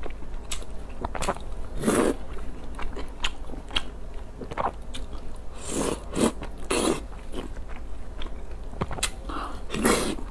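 Close-miked, wet eating sounds: chewing and slurping of noodles and soft pieces in a spicy broth. Irregular small mouth noises run throughout, with louder slurps about two, six and seven seconds in.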